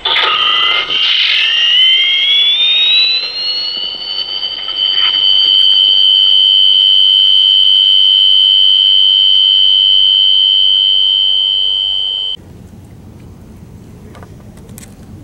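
A loud alarm-like tone that rises in pitch over the first four seconds or so, then holds steady and cuts off suddenly about twelve seconds in.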